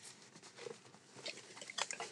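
Faint scuffs and light taps of a cardboard box being handled and turned by hand, a few soft clicks scattered through.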